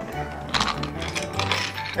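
Wooden toy train engine pushed by hand along a wooden track, its wheels rattling and clicking, over quiet background music.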